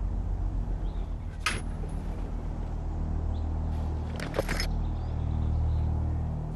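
Long-handled bolt cutters cutting a padlock on a wooden shed door: one sharp snap about a second and a half in, then a brief scrape and a second sharp click a few seconds later, over a steady low drone.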